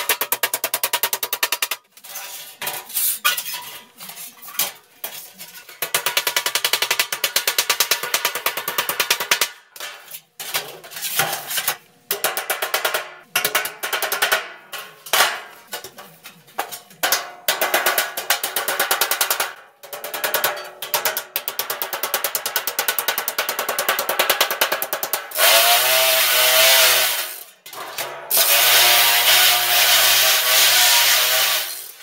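Sped-up hammering on galvanized sheet-metal duct as the seams are knocked together: quick metallic knocks run so close that they sound almost like a drum roll. Near the end a power tool runs in two bursts of a few seconds each.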